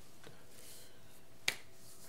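Quiet room tone with one short, sharp click about one and a half seconds in.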